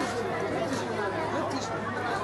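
Indistinct chatter of several distant voices, players and spectators calling across a football pitch, over a faint steady low hum.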